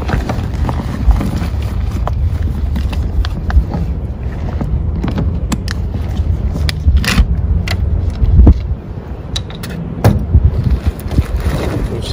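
Rustling and crinkling of a waterproof roll-top backpack being handled and its top opened, with scattered clicks and knocks, over a steady low rumble.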